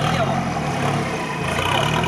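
Toyota Land Cruiser 70 engine running at low, steady revs in deep mud, with its differential lock engaged.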